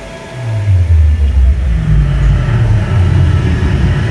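A loud, deep rumble sets in about half a second in and holds, with faint music above it.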